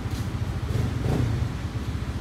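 A running motor's steady low rumble with a fast, even pulse.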